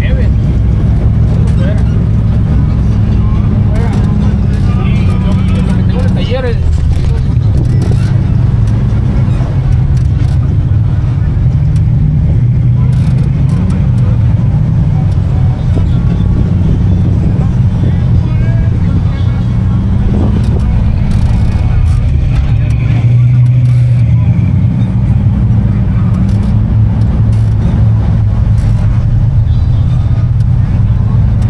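Off-road vehicle's engine running under load while driving on a sandy desert track: a steady low drone that drifts up and down with the throttle, with scattered knocks and rattles from the bumpy ride.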